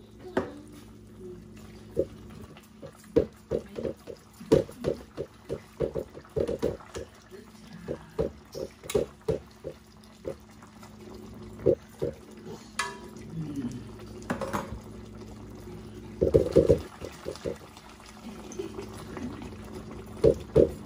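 Thick conch stew (ragout) simmering in a pot, with a run of low blub-blub bubbles two or three times a second from about two seconds in, dying down past the middle and coming back near the end. A metal spoon stirring through it adds a few sharper scrapes and clicks against the pot.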